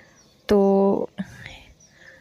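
Speech only: a woman says one short word, with quiet pauses either side.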